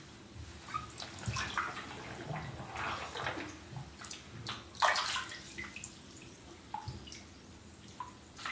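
Bath water sloshing and splashing as a person in jeans and boots moves and kneels down in a full bathtub, with a louder splash about five seconds in.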